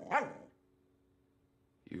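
A dog barks once, briefly, at the start. A man's voice starts speaking near the end.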